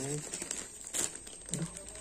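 Clear plastic packaging bag crinkling and rustling as it is handled and pulled open, with a sharper crackle about a second in.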